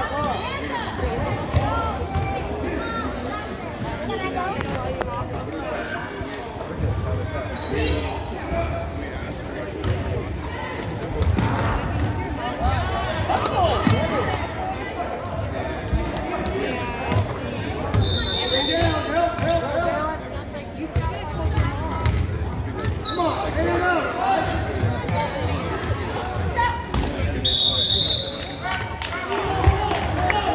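Basketball bouncing repeatedly on a hardwood gym floor during play, echoing in the hall. Two short, high referee whistle blasts come about two-thirds of the way through and again near the end.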